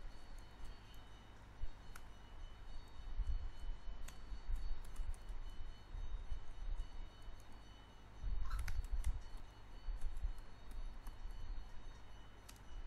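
Computer keyboard typing: irregular, scattered key clicks, with a faint low rumble underneath.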